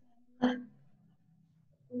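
A single brief, sharp vocal sound from a person about half a second in, followed by near silence.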